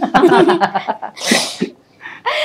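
Children laughing, with a short, loud, breathy burst a little past the middle.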